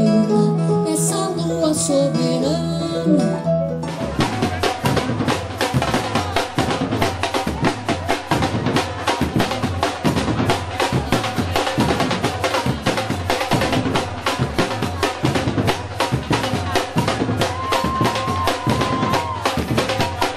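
A woman singing with a keyboard and guitar band, cut off about four seconds in by a live drum ensemble playing a dense, fast rhythm on many hand-held drums. A single high tone is held over the drums for a couple of seconds near the end.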